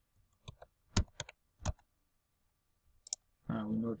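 Keystrokes on a computer keyboard: a quick run of about six separate key clicks in the first two seconds, then one more click just after three seconds in.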